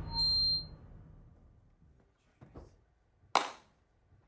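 Soundtrack music dying away, with a brief high ping just after it. After a near-quiet pause comes a faint short sound, then a single sharp hit a little past three seconds in.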